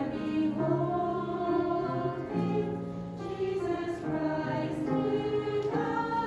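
Mixed church choir singing a slow hymn in sustained chords that change every second or so, with grand piano accompaniment.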